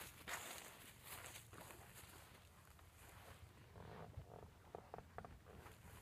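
Near silence: faint outdoor background with a few soft rustles near the start and a few light clicks about five seconds in.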